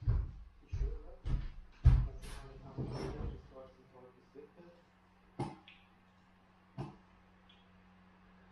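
Heavy footsteps thudding across a wooden floor, four or five low thumps in the first two seconds, then clothing rustle and a bed taking a person's weight as he sits down. Later come two sharp single clicks over a faint steady hum.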